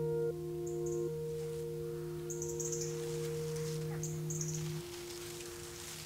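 The song's final piano chord ringing out and fading, its held notes dropping away one at a time, the lowest stopping about three-quarters of the way through. Faint high chirps come and go above it.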